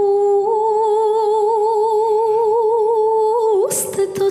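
A woman's voice holds one long unaccompanied note with a slow vibrato in a Macedonian folk song. Near the end it slides upward and breaks off with a short hiss.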